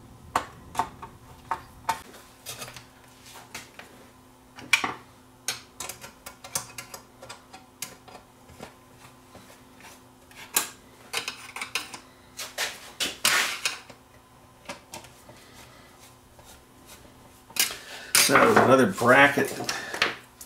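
Screwdriver and small screws clicking and clinking against a tuner's sheet-metal chassis as its grounding screws are driven back in: scattered, irregular light metallic taps and clicks. A voice is heard briefly near the end.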